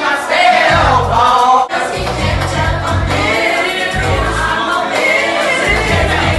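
A group singing together into a microphone through the PA speakers, over loud amplified backing music with a pulsing bass.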